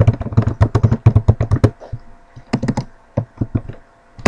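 Typing on a computer keyboard: a quick run of keystrokes for about a second and a half, a short pause, then two shorter bursts of keystrokes.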